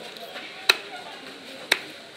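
Knife striking a large rohu fish on a wooden chopping block: two sharp hits about a second apart.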